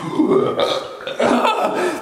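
A man making a low, croaky, burp-like vocal sound twice in a row.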